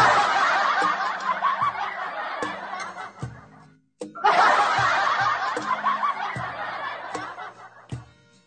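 Laughter in two swells. Each starts loud and fades over about three seconds, with a short silence between them near the middle.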